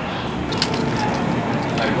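Busy café counter: a steady hiss and murmur of voices with a few sharp clicks of cups and equipment.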